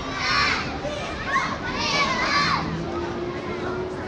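A crowd of young schoolchildren shouting and calling out, with high voices rising over a noisy babble, the loudest calls near the start and in the middle.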